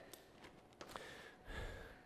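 Near silence in a small room, with a faint exhale and a soft click about a second in, as the resistance bands are reset between sides.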